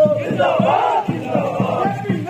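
A marching crowd shouting slogans together, many voices overlapping, with one long held shout at the start.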